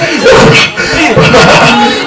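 A preacher's loud, impassioned voice delivering a sermon, with sharp breathy exclamations between phrases.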